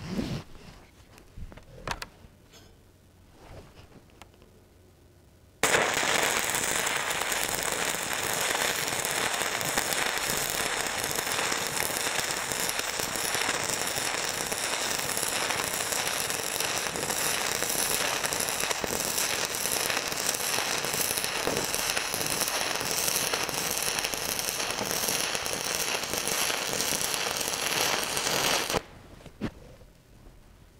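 Shielded metal arc (stick) welding with an E6010 cellulose-flux electrode running a bead on steel plate: a loud, harsh, steady crackle that strikes about five seconds in, runs for about 23 seconds while the rod burns down, and cuts off sharply near the end. E6010 burns hotter and more aggressively than other rods.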